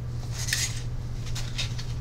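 A steady low hum with a few scattered light clicks and clinks, the sharpest about half a second in.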